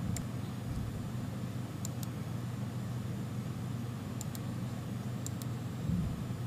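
Computer mouse clicking several times, some clicks in quick pairs, over a steady low hum.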